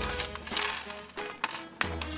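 A LEGO minifigure foil blind bag crinkling as it is handled and opened, with small plastic pieces clicking and clattering onto a hard table. Faint background music plays under it.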